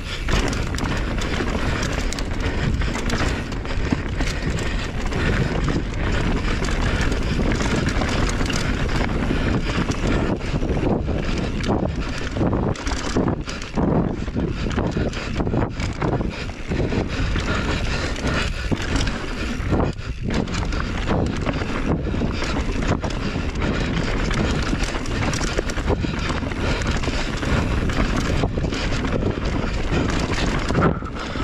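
Mountain bike descending fast on a dry dirt trail: wind rushing over the camera microphone and tyre noise, with frequent knocks and rattles from the bike over bumps.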